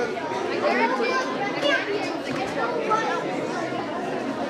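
Crowd chatter: many voices talking over each other at once, steady throughout.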